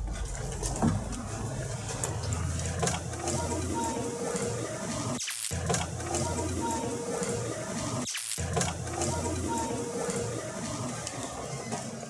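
A hissy camera audio recording holding a faint, indistinct voice-like sound. The snippet is replayed several times, with brief silent breaks between the repeats. The investigators hear it as a voice saying "don't come in".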